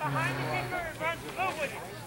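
Several voices shouting and calling out over one another, indistinct: players and sideline calling during open play in a rugby match. A low steady hum runs under the first half-second or so.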